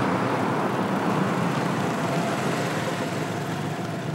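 An old sedan and a military truck running on a dirt track, with steady engine and road noise as they drive up and pull to a stop, easing a little toward the end.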